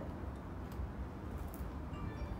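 A steady low room hum with a few faint ticks and rustles from hands pressing potting soil into a small pot around a succulent.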